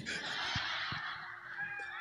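Audience laughing together, faint and spread out, with no single voice standing out.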